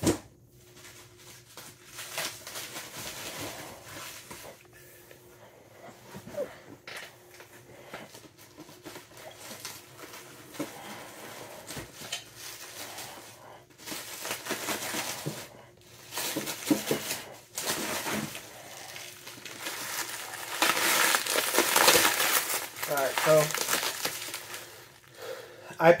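Bubble wrap and plastic packaging crinkling and rustling in irregular bursts as boxed Funko Pop figures are unwrapped, loudest about four-fifths of the way through.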